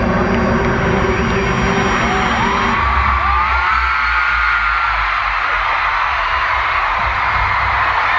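Concert crowd screaming and whooping over loud amplified music. About three seconds in, the held musical notes give way to a deep pulsing bass.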